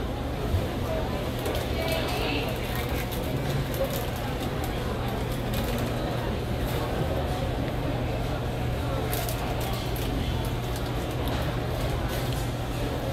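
Steady airport-terminal room noise: a constant low hum with indistinct voices in the background.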